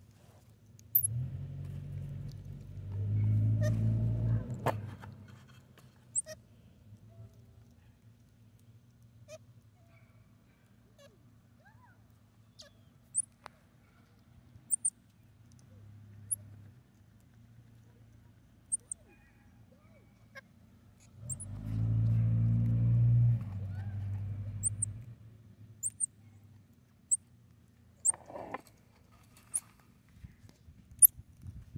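Two road vehicles passing by, each a low engine sound that swells for about three seconds and fades: one about a second in, the other about twenty-one seconds in. Faint short high chirps and ticks sound between them.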